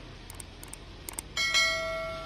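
A few soft clicks, then a bright single bell chime about a second and a half in that fades away slowly: the click-and-ding sound effect of an animated subscribe-button overlay. Low traffic rumble lies underneath.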